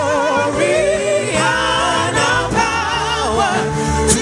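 Live gospel worship music: men singing into microphones with wavering, sustained notes over instrumental backing.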